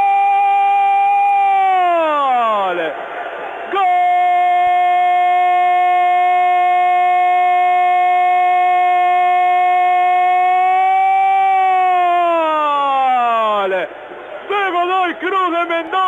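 Radio football commentator's drawn-out goal cry, "¡Gooool!", held loud on one high pitch for about two and a half seconds and then sliding down. After a breath it is taken up again and held for about seven more seconds before sliding down in pitch. Short excited shouts follow near the end. The sound is narrow, as through AM radio.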